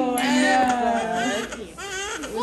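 Newborn baby crying, a long wavering cry that breaks off briefly near the end and then starts again.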